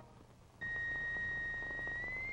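A steady, high pure tone starts about half a second in and holds one pitch: the sound wave being played at a glass goblet to find the pitch that will shatter it.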